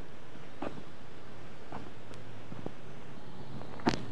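A few soft footsteps on an asphalt road, about one a second, over a steady background hiss, with one sharper knock just before the end.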